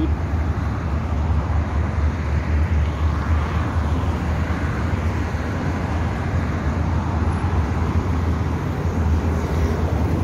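Street traffic noise: a steady low rumble of road traffic, with a slight swell in the middle of the stretch.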